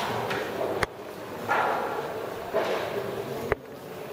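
Indistinct background hubbub in a large, echoing church interior, broken by two sharp clicks, one about a second in and one near the end. After each click the sound level drops abruptly.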